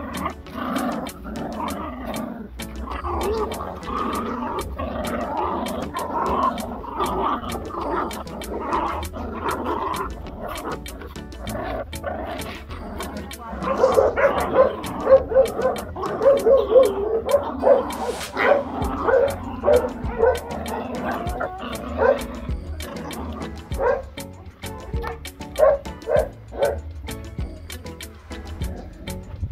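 Seven-week-old pit bull puppies yipping and barking as they tug at a cloth, with a quick run of short yips from about halfway through. Background music with a steady beat plays throughout.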